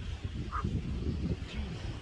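Wind buffeting the microphone, an irregular low rumble, with the sea's surf behind it; a brief faint chirp about half a second in.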